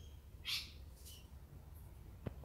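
A bird gives one short, harsh call about half a second in, followed by a fainter, higher call, over a low background rumble.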